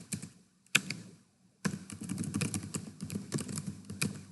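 Computer keyboard typing: a single sharp click under a second in, then a quick, dense run of keystrokes from about a second and a half in.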